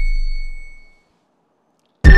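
Low background music fading out over about a second, then silence.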